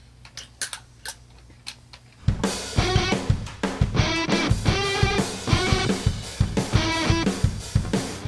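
A low steady hum with a few clicks, then about two seconds in a full band comes in loud: a drum kit with kick, snare and cymbals under an electric guitar.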